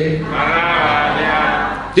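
A voice holding one long, drawn-out, high-pitched note for about a second and a half, rising out of speech and breaking off just before talk resumes.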